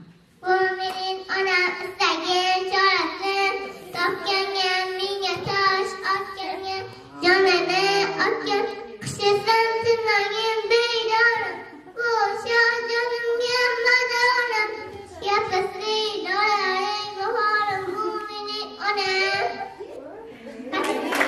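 A young boy singing solo into a handheld microphone, unaccompanied, with short breaks between phrases about seven and twelve seconds in.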